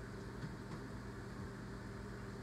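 Steady low hum of a microwave oven running mid-cook, with a few faint clicks.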